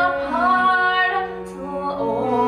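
A woman singing a slow phrase of held notes from a show tune over theatre orchestra accompaniment, dipping briefly about one and a half seconds in before the next phrase.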